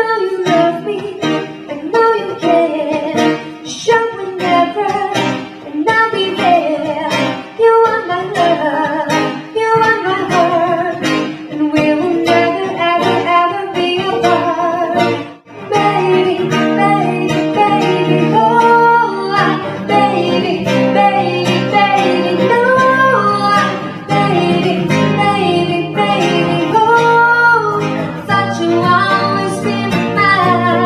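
Small live acoustic band: two guitars strummed and plucked, with singing over them. The music breaks off for a moment about halfway, then carries on with held sung notes over the guitars.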